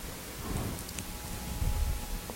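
Faint rustling with a few soft, low bumps that grow louder near the end.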